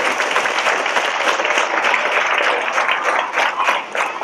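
Audience applauding: many hands clapping together in a dense, steady wash of claps.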